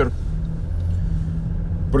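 Car cabin noise while driving: a steady low hum of engine and tyres heard from inside the moving car.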